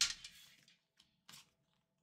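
Tarot cards being handled and spread out by hand: a faint click about a second in, then a short, soft papery swish of cards sliding.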